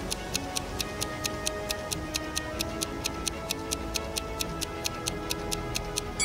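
Clock-style ticking of a quiz countdown timer, a steady run of about four ticks a second, over soft background music. The ticks count down the time given to answer the riddle.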